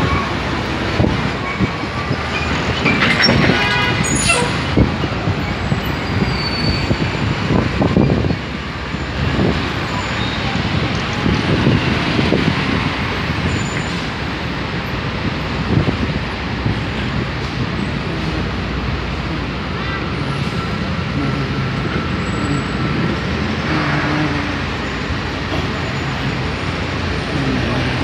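City street traffic noise: a steady wash of passing cars and engines, with indistinct voices of passers-by.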